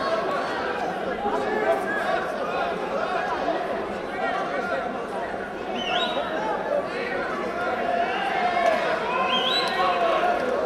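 Indistinct chatter of many overlapping voices in a large sports hall, steady throughout, with a couple of short high rising calls about six seconds in and again near the end.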